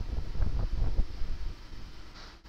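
Low rumbling noise on the microphone, like wind on the mic, with a few faint ticks in it, fading toward the end.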